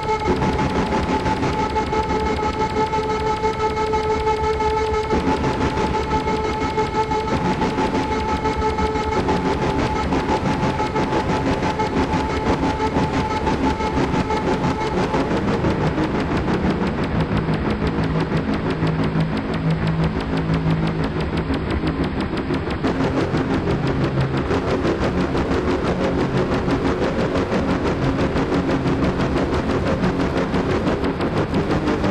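Experimental electronic music played live: a dense, noisy drone with several held tones over it. The tones drop out one by one during the first half, leaving a rougher noise texture with lower tones under it.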